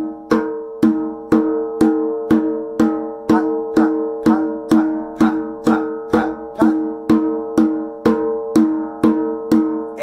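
Djembe struck with both hands on the edge of the head in a steady run of even eighth-note "pat" strokes, about two a second, over backing music.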